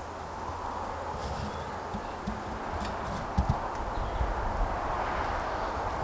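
Steady outdoor hiss of wind in the trees, growing slightly louder, with a few dull low knocks around the middle.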